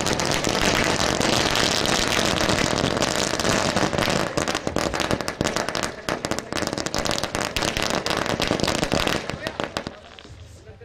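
A long string of firecrackers going off in a dense, rapid crackle of pops that stops about nine and a half seconds in.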